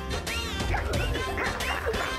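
Comic background music with a run of short, squeaky sound effects that slide up and down in pitch, several a second.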